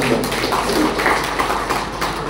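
Audience applause: a burst of many people clapping that breaks out as the speech stops.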